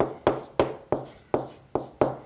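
Stylus tapping and scratching on an interactive whiteboard screen while handwriting words: six sharp taps in two seconds, each fading quickly.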